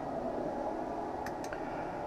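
Steady room noise with a faint hum, like an air conditioner or fan running. Two faint light clicks come close together about a second and a quarter in.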